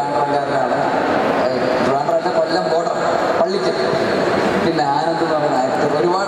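Speech only: a man talking in Malayalam into a handheld microphone.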